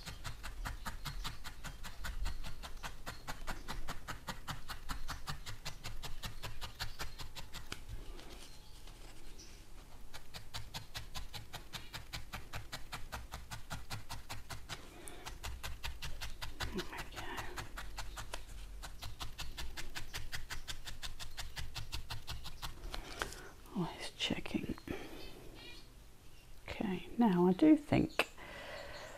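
A felting needle stabbing rapidly and evenly through a core-wool shape into a felting pad, several soft punches a second. The stabbing stops a few seconds before the end.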